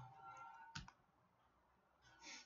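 A single faint computer click about three-quarters of a second in, over near silence.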